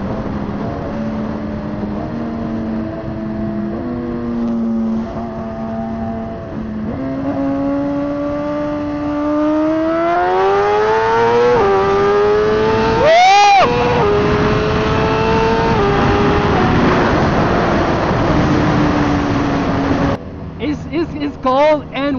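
Suzuki GSX-R1000 inline-four engine heard from on the bike under a rush of wind. It runs steadily at first, then its pitch climbs for several seconds as the bike accelerates and drops suddenly at an upshift. There is a brief sharp rise and fall in pitch soon after, then it holds lower and eases off before fading out near the end.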